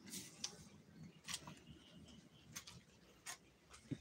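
Faint, sparse clicks and taps, about seven at irregular intervals, over an otherwise quiet background.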